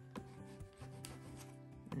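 Plastic Bondo body-filler spreader scraping and pushing soft oil pastel across paper: a faint rubbing with a few short scrapes, over soft background music with held notes.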